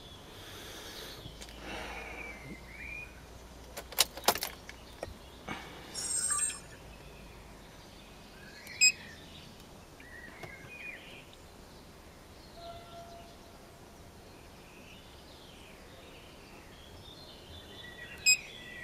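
Birds chirping in the background, with a few sharp clicks and taps: a pair of loud clicks about four seconds in, a short burst near six seconds, and a single sharp click near nine seconds.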